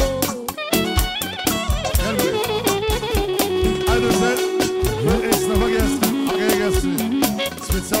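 Dance music from a live wedding band: a dense, steady drum beat under a wavering lead melody that bends between notes and holds some long tones.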